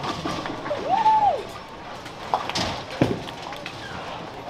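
Bowling-centre background noise: scattered sharp knocks and clatter over a steady hubbub, with a brief tone that rises and falls about a second in.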